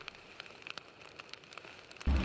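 Faint, sparse crackling of a fire sound effect: scattered small snaps over a soft hiss.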